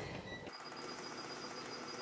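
A single short electronic beep from a cooktop's touch control panel about half a second in, as its timer is set, followed by a faint steady high-pitched whine over a low hiss.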